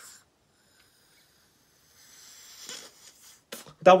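A man blowing up a small rubber balloon by mouth: a faint breathy rush of air about halfway through, then a short click just before he speaks again.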